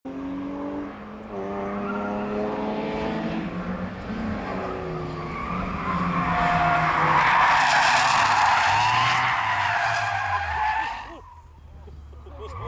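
Car engines revving through a corner, then a long, loud tyre squeal from about five seconds in as a car slides sideways in a near crash. The squeal is loudest towards the end and drops away abruptly about a second before the end.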